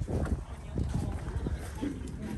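Footsteps on brick paving, a short knock every fraction of a second, over a low rumble of wind on the microphone.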